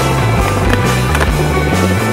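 Rock music playing, with a skateboard's wheels rolling and a couple of sharp clacks of the board heard through it.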